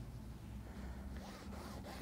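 Faint scratching of a marker drawn along a ruler across lining fabric, over a low steady hum.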